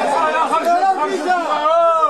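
Loud, excited speech: a voice talking fast, its pitch swooping up and down and rising near the end.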